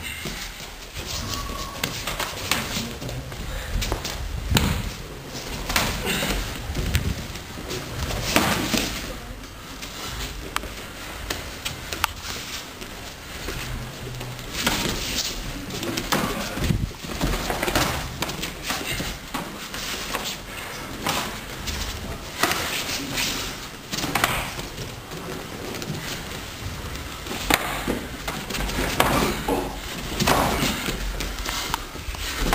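Sparring with padded gloves: scattered thuds and slaps of punches and kicks landing and bare feet moving on training mats, coming at irregular moments.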